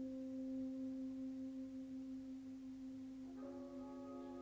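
Sousaphone holding one long steady note. Near the end other instruments come in under it with a held chord.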